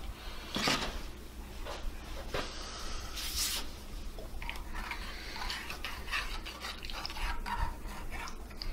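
Gloved hands rubbing and handling small items on a workbench: scattered light scrapes and rustles, one longer hissy rub about three and a half seconds in, over a steady low hum.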